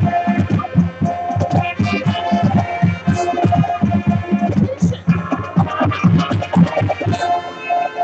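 High school marching band playing its Latin show music: sustained brass chords over a busy, steady drumline beat, with a short drop in the sound about five seconds in.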